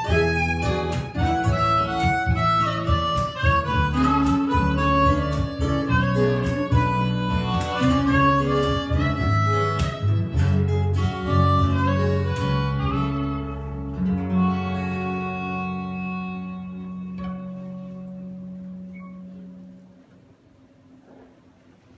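Live harmonica and strummed acoustic guitars with a steady percussion beat playing the closing bars of a song. About fourteen seconds in, the band strikes a final chord, which rings and fades away.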